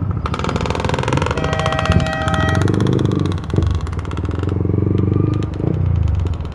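Yamaha MT-15's 155 cc single-cylinder engine running as the bike pulls away at low speed, with two brief dips in engine note. A steady high tone sounds for about a second near the start over the engine.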